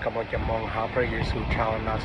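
A man's voice reading aloud, over a steady low rumble.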